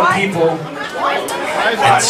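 Speech only: a man talking into a microphone, with crowd chatter in the hall.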